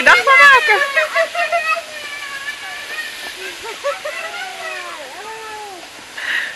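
Mostly speech: a woman's voice in the first couple of seconds, then fainter talk from other people over a steady rushing background noise.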